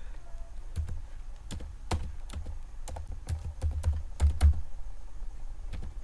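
Computer keyboard typing: an irregular run of keystroke clicks as a short phrase is typed.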